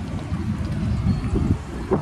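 Wind buffeting the microphone: a low, irregular rumble with light outdoor background noise.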